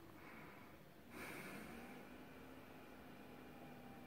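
Netbook's cooling fan kicking in about a second in and then running as a faint, steady whir with a low hum, spun up by the load of booting Windows.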